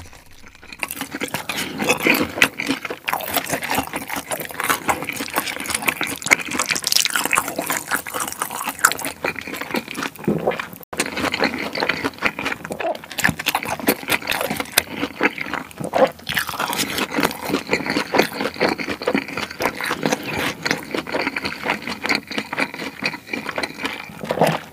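Close-miked eating sounds of fried noodles being slurped and chewed: wet mouth noises and many small, irregular clicks and smacks following one another.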